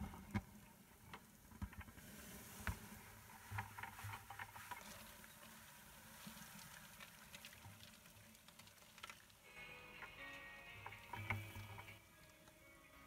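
Dubia roaches poured from a plastic bucket, pattering and rustling onto cardboard egg crates with scattered light taps. Background music comes in near the end.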